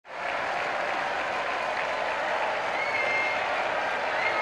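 Crowd applauding steadily, fading in at the start, with a brief high whistle-like tone about three seconds in.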